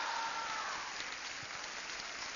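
Theater audience clapping, an even spatter of applause with a faint call from the crowd in answer to the performer's question.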